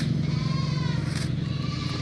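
A steady low machine hum, with a faint drawn-out call from an animal lasting about a second, sagging slightly in pitch.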